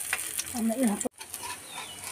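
Oatmeal pancake batter sizzling in a hot metal pan over a wood fire, a steady light hiss. A short voice-like sound comes in about half a second in, and the sound drops out abruptly at a cut about a second in.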